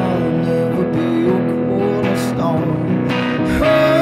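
A man singing over a strummed electric guitar, playing a slow, sustained rock song; a long note is held near the end.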